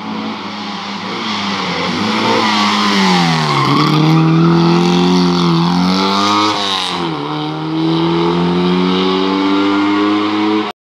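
Historic rally car's engine driven hard: the revs climb and fall, dipping sharply about four seconds and about seven seconds in as gears change, then pull up steadily toward the end.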